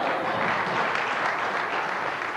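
Audience applause: a dense, steady clatter of many hands clapping in response to a punchline.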